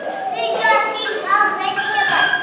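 A young child's high-pitched voice speaking, giving an answer to a quiz question.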